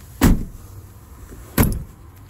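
2018 Toyota Tacoma pickup's driver door being shut: two solid thumps about a second and a half apart.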